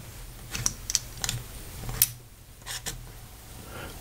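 Several light clicks and taps of fountain pens being handled and lifted off a paper-covered desk, about six in a few seconds.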